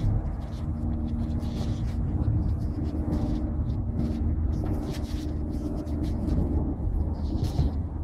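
Soft rustling and light snapping of pelargonium leaves and stems being picked off by hand, over a steady low rumble and faint hum that fades out about two-thirds of the way through.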